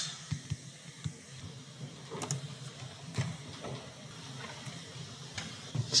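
Faint stylus taps and scratches on a drawing tablet while handwriting, a few irregular small clicks over a low steady hiss.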